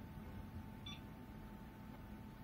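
A single short electronic beep about a second in, over the low steady hum of a running PC and a faint steady whine.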